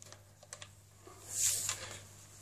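Handling noise: a few light clicks, then a brief rustling scrape about one and a half seconds in as the camera is moved and brushes against the bass and clothing.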